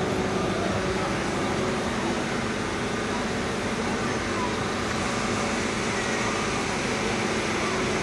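Steady background noise with a faint low hum and indistinct voices.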